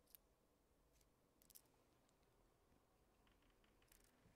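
Near silence: room tone, with a few faint, short clicks spread through it.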